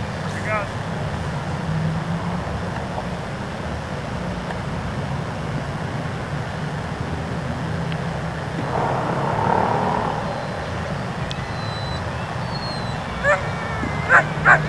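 A restrained dog whining briefly, once just after the start and again shortly before the end, over a steady low hum and outdoor noise, with a short rush of noise about nine seconds in.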